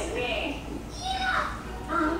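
Indistinct background voices, a child's among them, in short bursts, over a low steady hum.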